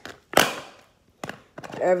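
Handling of a plastic water bottle: one loud sharp tap a third of a second in and a lighter tap just past a second, then a voice starts near the end.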